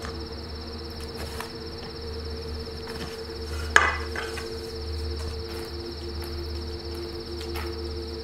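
A steady ambient drone of two held tones over a low hum, with a high, even buzzing band like insects above it. One sharp knock about four seconds in.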